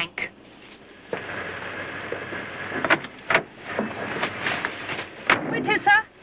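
An old staff car's doors shutting with a few sharp knocks. From about a second in, a steady noisy rumble of the car running sets in, and a voice is heard briefly at the very end.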